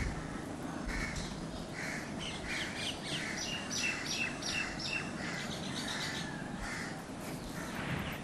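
Outdoor birds calling: scattered short calls, with a quick run of repeated short high chirps, about four a second, in the middle.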